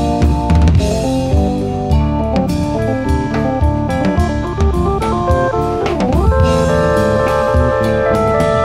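Instrumental break of a rock song, with no singing: guitar and drum kit over held keyboard chords, and a brief falling-and-rising sweep about six seconds in.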